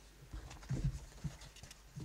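A few soft knocks and handling sounds on a table near a desk microphone as papers are picked up.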